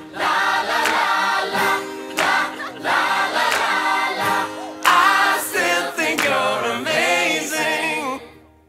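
Closing bars of a pop song: layered choir voices singing held lines, nearly a cappella. The bass and drums drop out right at the start.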